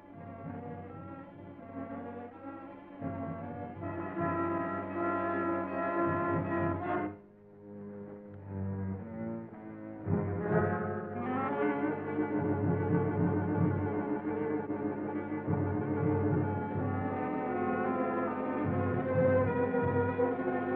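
Dramatic orchestral underscore led by low brass, with sustained tense chords. It drops away briefly about seven seconds in, then swells louder with rising brass notes from about ten seconds on.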